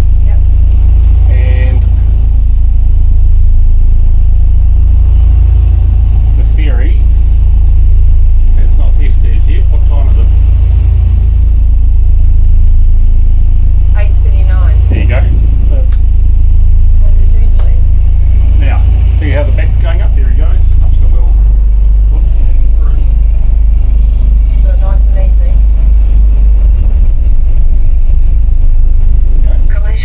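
Steady, loud low rumble of the motor yacht's diesel engine heard from the wheelhouse, its low note shifting about two-thirds of the way through, with snatches of voices now and then.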